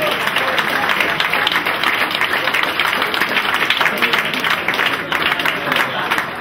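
Audience applauding, with voices talking over the clapping.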